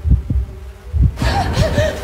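Trailer sound design: a low, quick heartbeat-like pulse of thuds, joined about a second in by a swelling airy hiss with faint wavering whistle tones.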